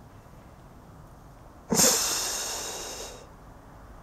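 A person's loud breath through the nose close to the microphone: it starts suddenly nearly two seconds in and fades out over about a second and a half.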